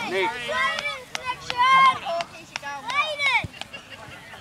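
High-pitched children's voices calling and shouting during a junior rugby league game, with one long rising-and-falling call about three seconds in. A few sharp clicks come in between.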